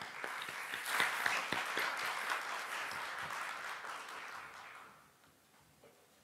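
Audience applauding. The clapping builds quickly, is loudest about a second in, and dies away by about five seconds.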